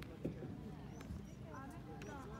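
Indistinct talk of onlookers, with a few short knocks of a horse's hooves cantering on the grass arena, the sharpest about a quarter of a second in and another about a second in.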